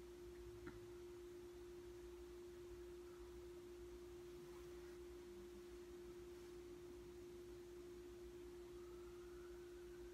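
Near silence: bedroom room tone with a faint steady hum at one unchanging pitch, and a faint click under a second in.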